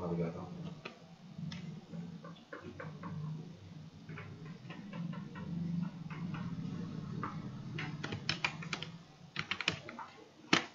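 Computer keyboard and mouse clicks: scattered single clicks, then a quick run of keystrokes near the end.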